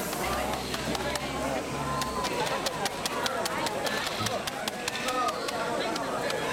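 A man's voice talking through a microphone and public-address speaker, with scattered small clicks and knocks and some background chatter. A low hum sounds for the first two seconds or so.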